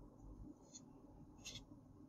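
Near silence, broken by two faint, brief scratchy rustles of fingers on the cardboard toy box as it is held and shifted, one just under a second in and one about a second and a half in.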